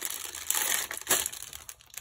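Crinkling of a thin clear plastic bag being handled and opened to get at the small packets of diamond-painting drills inside. The rustles are loudest about half a second and about a second in.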